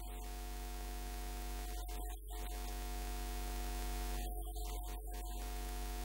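Steady electrical mains hum with a buzz of evenly spaced higher overtones from the sound system, unbroken by speech or singing.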